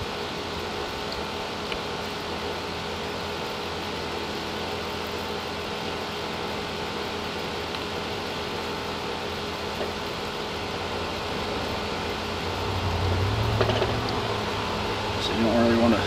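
Steady fan-like background hum, with a deeper low hum swelling up about three-quarters of the way through.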